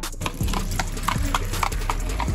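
Horse's hooves clip-clopping on the road as a horse-drawn buggy passes close by, a quick even run of hoof strikes, several a second.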